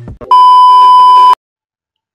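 Colour-bars test-tone beep: a loud, single steady pitch that starts about a third of a second in, lasts about a second and cuts off suddenly.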